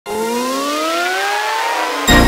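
Synthesized riser sound effect: a pitched tone with a hiss beneath it, gliding steadily upward in pitch.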